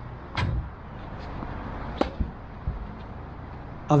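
A tennis ball is being struck and bouncing on an outdoor hard court: a few sharp, separate knocks at uneven spacing. The clearest come about half a second in and about two seconds in, over a faint steady background.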